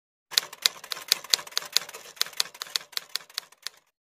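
Typewriter-style typing sound effect: a run of sharp keystroke clicks, about four or five a second and slightly uneven, that starts a moment in and stops shortly before the end.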